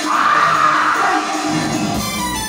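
Traditional stage-opera music, with a loud, drawn-out cry from a performer lasting about a second near the start.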